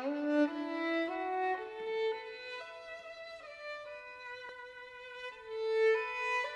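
Violin playing a slow, smooth melody: notes rise step by step, fall back, and one note is held long near the end.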